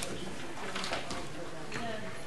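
Low, indistinct voices murmuring in a committee room, with no clear words.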